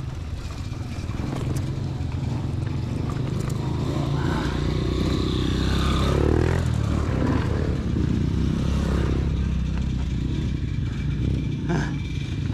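Several dirt bikes riding up a dirt trail and passing close by. Their engines grow louder towards the middle, and the pitch drops as the lead bike goes past about six seconds in.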